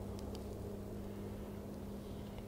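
Steady low background hum with a faint noise haze, and a few faint clicks early on.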